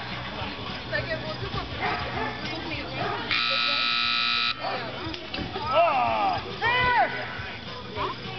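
An electronic timer buzzer gives one steady tone for just over a second, about three seconds in, marking the end of a timed disc dog round. Voices rise and fall in whoops just after it.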